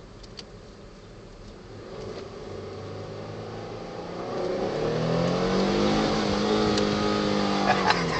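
The Ford Flex's twin-turbo V6, heard from inside the cabin. It runs quietly at first, then grows louder from about four seconds in as the car accelerates hard. Its note rises, then holds steady.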